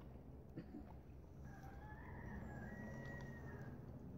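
A faint bird call: one long call of about two seconds, beginning about a second and a half in.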